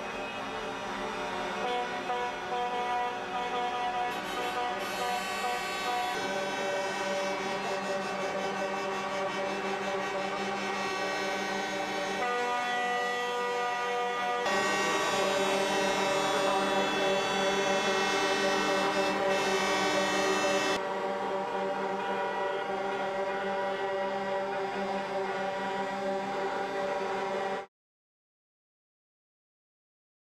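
Several truck air horns blaring at once in long, steady held blasts. The mix of tones changes abruptly at each edit and cuts off suddenly near the end.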